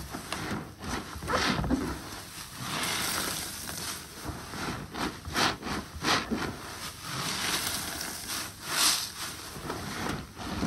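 Wet mesh-covered bath sponges squeezed and kneaded by rubber-gloved hands in a basin of soapy water: irregular squelching and sloshing, with a few sharper squishes in the second half.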